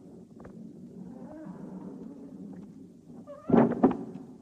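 Heavy wooden door being pushed open, its hinges giving a low, drawn-out creak that swells for about three seconds, followed near the end by a couple of loud, sharp knocks.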